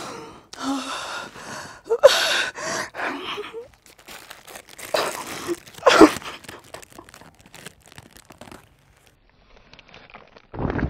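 A woman sobbing with gasping breaths while handling a plastic snack packet. The wrapper crinkles and crackles in quick little bursts through the second half.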